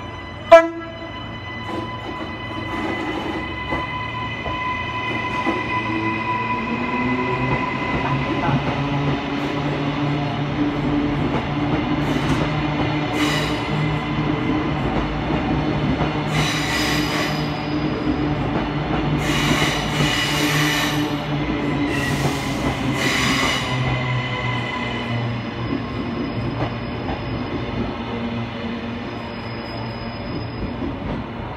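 Queensland Rail Next Generation Rollingstock electric train at the platform, its motors giving a steady hum with several steady tones that rise in pitch a few seconds in. A single sharp knock sounds about half a second in, the loudest moment, and four or five short bursts of air hiss come in the second half.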